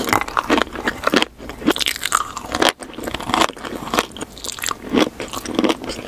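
Close-miked chewing of a crunchy, sprinkle-covered sweet: dense, irregular crisp crunches and crackles with wet mouth sounds, dying down at the very end.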